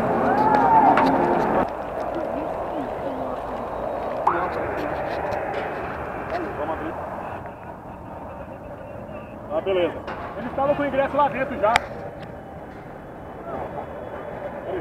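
Indistinct voices of people talking, not close to the microphone, over outdoor background noise, in several short stretches joined by cuts; a burst of voices and a sharp click come about two-thirds of the way in.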